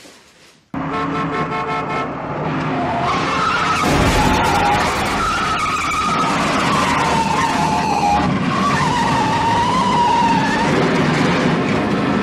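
Car chase: engines revving and tyres squealing as cars slide, starting suddenly about a second in, with a heavy low thud around four seconds in.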